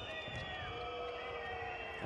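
Steady crowd noise from spectators filling a handball arena during play.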